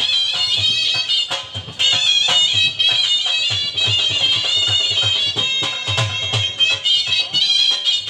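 Shehnai playing a high, reedy, ornamented melody over a dhol beating a steady rhythm, amplified through loudspeakers. The melody breaks off briefly about one and a half seconds in, then carries on.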